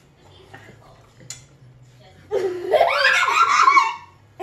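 Quiet table sounds with a light click about a second in, then a loud, high-pitched burst of laughter from about halfway through that rises in pitch.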